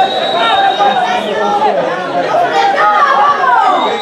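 Several voices shouting and calling over one another. A thin, steady high tone runs under them for the first second and a half, and starts again near the end.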